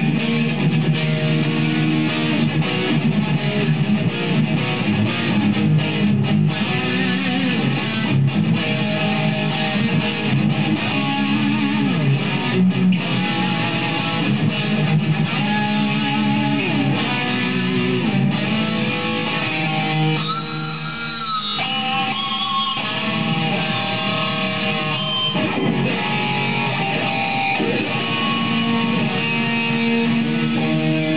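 A 2007 Mexican-made Fender Lone Star Stratocaster electric guitar played through an amplifier, noodled single notes and short runs without a set tune. A little past two-thirds of the way through there is a high held note with a wavering pitch.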